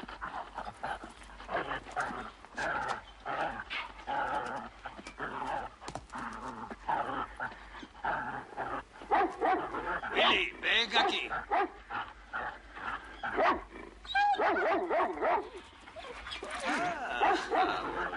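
A dog barking and making other vocal sounds, mixed with speech.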